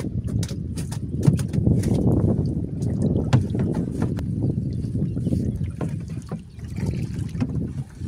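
Steady low rumble of wind on the microphone over open water, with scattered light knocks and rustles from a fishing net being handled and paid out over the side of a small boat.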